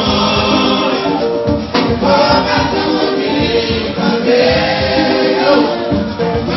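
Live Congolese rumba band: several male voices singing together in chorus over a steady drumbeat.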